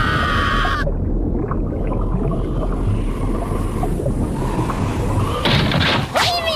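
Anime characters holding a shout of alarm until just under a second in, then a loud, steady low rumble of crashing seawater from a wave that has been cut through.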